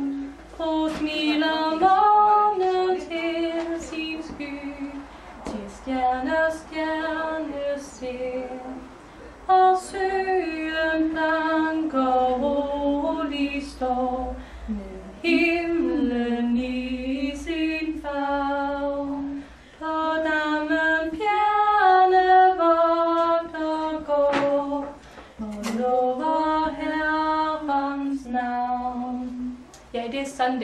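A young woman singing a hymn solo without accompaniment, in phrases of held notes with short pauses for breath between them.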